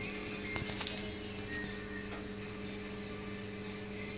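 Egg incubator's fan and motor running with a steady low hum. A few light clicks come from handling about half a second to a second in.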